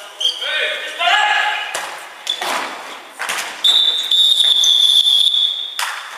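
Futsal ball thuds and players' shouts echoing in a large wooden-floored sports hall, followed about three and a half seconds in by one long, steady, high-pitched whistle blast that lasts a little over two seconds and is the loudest sound.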